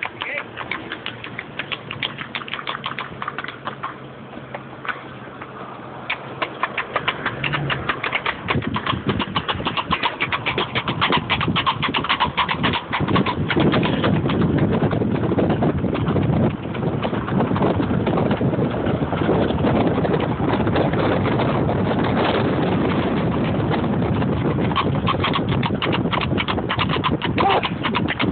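Horse hooves clattering on a paved road at a fast pace. From about halfway a loud, steady rushing noise builds up under the hoofbeats.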